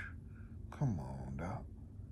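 A man's voice: a short breath, then a drawn-out wordless vocal sound about a second in, its pitch dropping and then holding.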